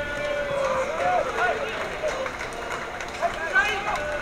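Several voices shouting and calling out over one another during a football match, including one long held call about a second in.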